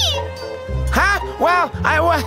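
Cartoon soundtrack music with held bass notes, and a few short whining vocal cries from an animated character that rise and fall in pitch in the second half.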